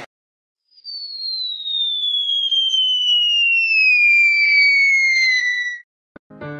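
Descending whistle sound effect: a single high tone starts about a second in, glides slowly and steadily down in pitch for about five seconds, then cuts off abruptly.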